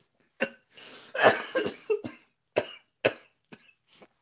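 A man coughing through hard laughter: a string of short coughs and laughing bursts, the longest and loudest about a second in.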